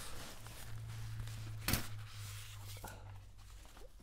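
Faint rustling as a padded gig bag and the packaging around a guitar neck are handled, with one sharp knock a little under halfway through, over a steady low hum.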